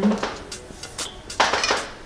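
A metal fork clinking and scraping on a ceramic plate while cutting cake, with a sharp click about a second in and a short scrape half a second later.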